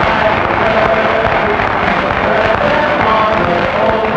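A stage chorus singing a show number together in long held notes, on an old, noisy film soundtrack.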